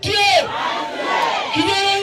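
A man's shouted calls and a large crowd shouting back in unison, call-and-response rally chanting.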